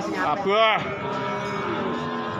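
One cow's moo that swells about half a second in, rises and falls, then tails off into a long, fainter held note.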